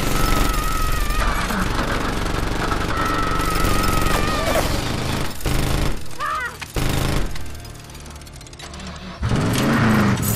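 Sustained rapid automatic gunfire for about the first five seconds, over a film score. Near the end a car engine starts and revs.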